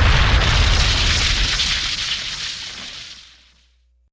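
Explosion sound effect closing a DJ mix: a loud blast with a deep rumble and hiss, already under way, dying away over about three and a half seconds.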